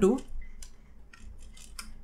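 Computer keyboard keys clicking as a few characters of code are typed: a run of separate, quick keystrokes over about a second and a half.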